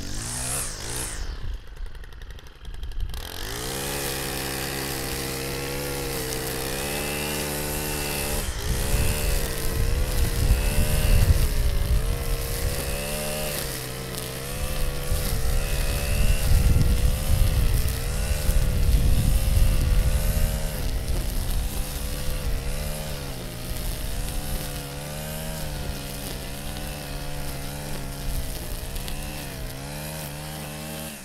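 Stihl FS 90R string trimmer's small 4-MIX engine being pull-started with a couple of rope pulls, catching about three seconds in and running steadily. From about nine seconds in it revs up and down as its .095 line cuts tall dry grass and brush, the engine note dipping and rising under load.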